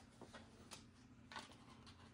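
Faint handling of a small cardboard jewellery gift box being opened: a few soft clicks and taps over near silence.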